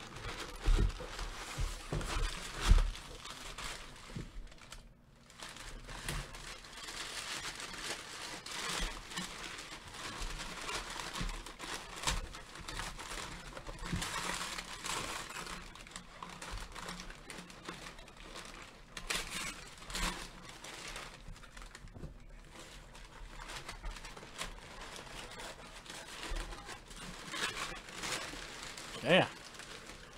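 Brown packing paper being crumpled and pulled out of a cardboard shipping box, with continuous crinkling and rustling throughout. A couple of sharp knocks come in the first three seconds.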